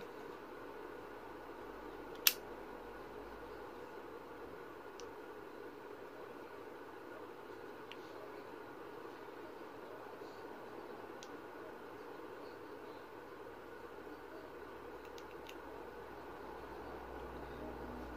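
Handling of a small USB-rechargeable lighter and fidget-spinner gadget: one sharp click about two seconds in, then a few faint ticks spread through the rest, over a steady low room hum.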